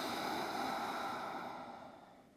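A long, deep exhale through the mouth that fades away over about two seconds.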